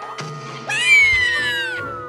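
Bouncy background music with a cartoon sound effect: a little under a second in, a sudden high, cry-like call sounds for about a second. Under it a long whistle slides steadily down in pitch.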